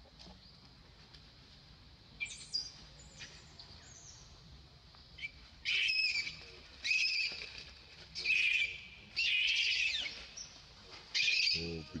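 Baby macaque crying in high-pitched squeals: a few faint calls early on, then a run of loud cries in the second half, each under a second long, coming about once a second.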